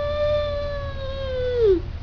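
A man imitating his Beagle-Basset mix's howl with his voice: one long held note that falls away and stops near the end.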